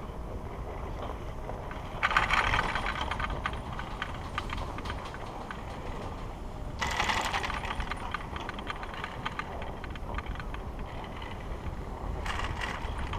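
Skis sliding over groomed snow while towed up a platter surface lift, with a steady hiss. There are two louder stretches of scraping and fast clicking, one about two seconds in and one about seven seconds in.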